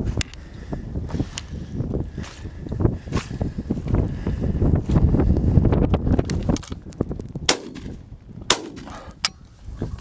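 Wind buffeting the microphone and footsteps brushing through heather, with a few sharp clicks on top, two of the clearest about a second apart near the end.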